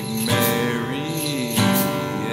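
Acoustic guitar being strummed in a song, with fresh chords struck about a third of a second in and again near the end.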